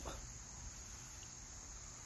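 Faint, steady high-pitched chirring of insects.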